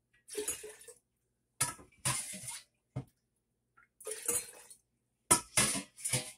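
Fermenting apple cider vinegar being scooped with stainless steel measuring cups and poured into a glass jar. It comes in several short splashes and clinks of metal cups against a stainless bowl, with a sharp click about three seconds in.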